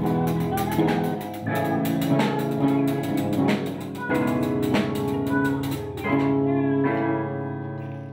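A school rock band playing live: guitars and bass holding chords over a drum kit with steady cymbal strokes. The drums stop about six seconds in and the last chord rings on, fading near the end.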